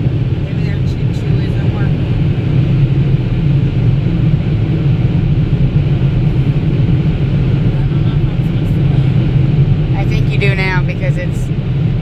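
Steady low rumble heard inside a car's cabin, with a voice briefly about ten seconds in.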